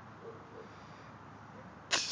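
A Bernese Mountain Dog puppy gives one short, sharp snort through its nose right at the end, over an otherwise faint background.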